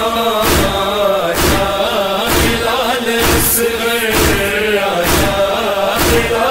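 A male voice chanting a noha, a Shia mourning lament, in long held and bending lines over a heavy steady thump about once a second that keeps the lament's beat.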